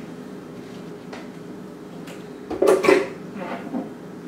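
Food and utensils being handled on a wooden cutting board at a kitchen counter: a few faint clicks, then a short cluster of louder knocks and clatter about two and a half seconds in, with a couple of lighter taps after. A steady low hum runs underneath.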